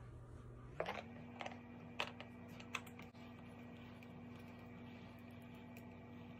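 Rock tumbler's motor running with a faint, steady hum that steps up in pitch about a second in, as its speed goes up, then holds. A few sharp clicks fall in the first three seconds.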